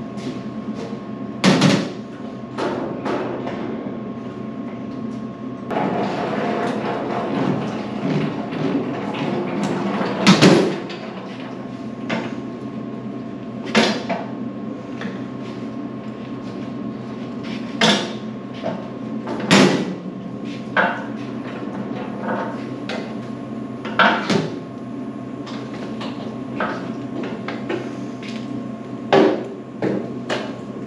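Irregular sharp knocks and clanks of hand work on pipes and fittings, with a denser stretch of rattling in the middle, over a steady hum.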